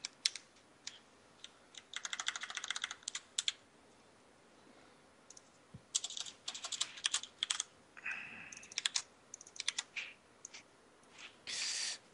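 Computer keyboard being typed on in quick runs of keystrokes with short pauses between them, one longer lull about four seconds in.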